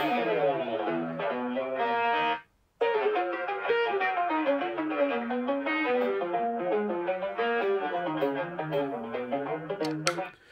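Electric guitar playing a fast, muted legato line, played back slowed to 0.6 speed and looping between two set points. There is a short break in the playing about two and a half seconds in.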